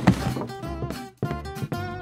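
Light background music led by a plucked guitar. A short dull hit sounds right at the start, and the music drops out briefly a little past the middle.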